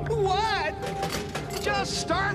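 A cartoon character's voice in wavering, sweeping cries without words, about half a second in and again near the end, over steady held tones of background music.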